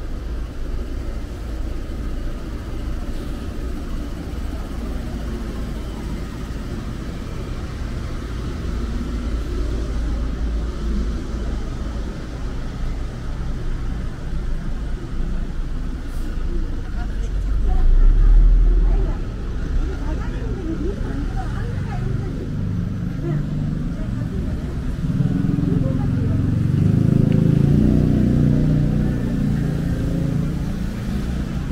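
Street traffic at night: a steady low rumble of car engines and tyres, with a brief deep rumble about 18 seconds in and a car engine growing louder as cars pass close near the end.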